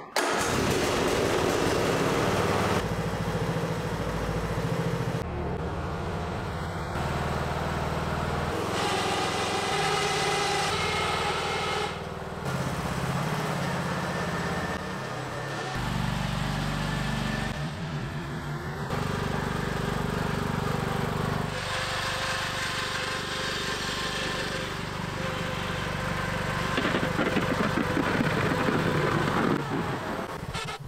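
Ride-on lawn tractor's small engine started with the key and then running, its pitch and loudness changing abruptly every few seconds.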